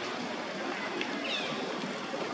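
A macaque's short, high-pitched squeal, falling in pitch, about a second and a half in, over steady outdoor background noise.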